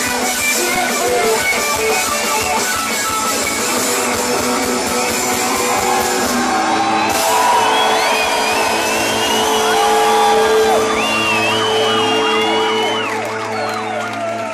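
A rock band plays live over a loud PA, heard from within the audience: strummed acoustic guitar, electric guitar, bass and drums. About halfway through, the band holds long sustained notes, like a song's closing chord, with shouts from the crowd over it. The sound fades near the end.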